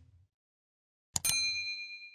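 A click sound effect about a second in, followed at once by a bright bell ding that rings on and fades over about a second: the notification-bell sound of a subscribe-button animation.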